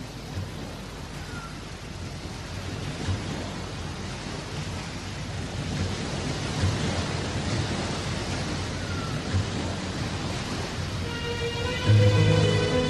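Steady rushing noise like rain, with faint low rumbles, slowly growing louder. Near the end, the first notes of a song come in over it.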